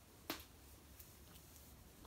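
Near silence: room tone, broken by one short sharp click about a third of a second in.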